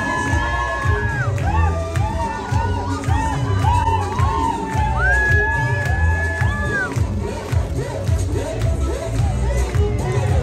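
Party crowd cheering and shouting over loud music with a pulsing bass beat. A long high held note sounds twice, near the start and again in the middle.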